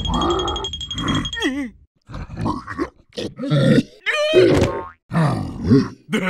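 Wordless cartoon character voice sounds: grunts and squeals in short bursts with brief gaps, including a wavering, falling cry about a second and a half in. A thin, high, steady tone rings under the first second and a half.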